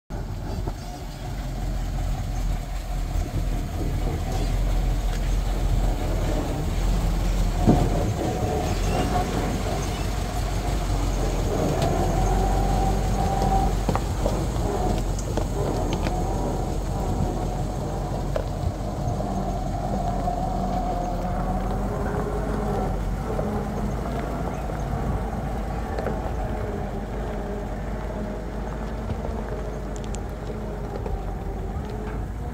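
A steady, continuous low engine rumble, like a vehicle running, with no clear change over the whole stretch.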